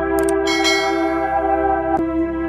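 A bell-chime sound effect rings out about half a second in, just after a couple of quick mouse-click sounds, over a steady organ-like music drone.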